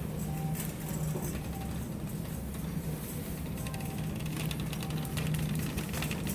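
Faint background music in a supermarket over a steady low hum, with light rattles from a shopping cart being pushed along a tiled aisle.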